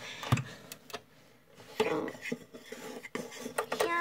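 Irregular sharp knocks and clatter against a plastic container as slime is mixed in it, the loudest knock just after the start, with a short lull about a second in.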